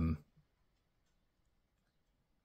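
A man's voice trailing off at the very start, then near silence: room tone.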